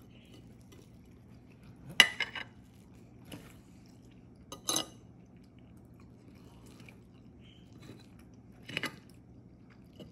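A metal fork cutting into a frittata and clinking against a ceramic plate: three sharp clinks, each with a short rattle, about two, five and nine seconds in, the first the loudest.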